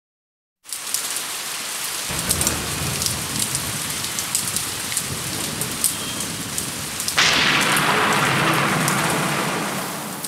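Rain with scattered drips, starting just after half a second in, with a low rumble from about two seconds in. About seven seconds in a louder thunderclap breaks and slowly fades, all as a recorded storm effect opening a film song.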